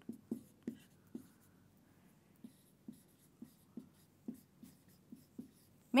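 Felt-tip marker writing on a whiteboard: a string of short, faint pen strokes and taps, about two a second.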